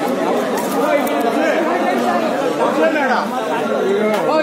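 A crowd of men talking at once: overlapping chatter, with no one voice standing out.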